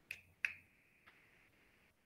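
Two quick, faint finger snaps about a third of a second apart, the second trailing a brief ring.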